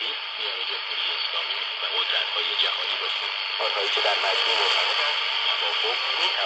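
Radio Farda's Persian shortwave broadcast on 9815 kHz coming through a cheap 12-band world-band receiver's small loudspeaker. A man's voice talks, thin and partly buried under a strong, steady static hiss typical of shortwave reception.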